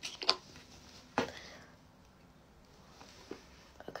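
Plastic cap being pulled off a sunscreen bottle: two sharp clicks in the first second and a half, then faint handling of the bottle.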